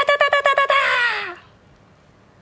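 A woman's high, shouted "atatatatata!", Kenshiro's rapid-fire battle cry, in quick staccato syllables about ten a second. It ends on one drawn-out syllable that falls in pitch and trails off, leaving a quiet room about halfway through.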